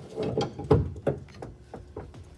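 Hand socket ratchet clicking in quick, uneven strokes as it works the bolts holding the half shafts to a Corvette's rear differential.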